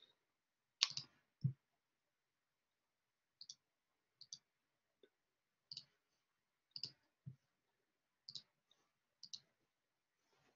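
Computer mouse clicks, about a dozen sparse, sharp clicks, several in quick pairs, with the loudest about a second in and near silence between them, as a screen share is set up and a web page opened.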